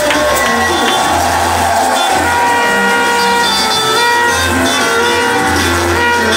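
Live worship band music: guitar over held chords and a steady low bass line, with voices mixed in.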